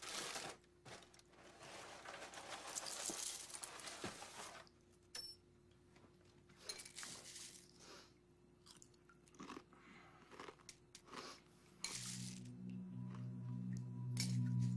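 Dry cereal pouring from a box into a bowl for about four and a half seconds, followed by scattered crunches of chewing and spoon clicks. A low sustained musical tone comes in near the end.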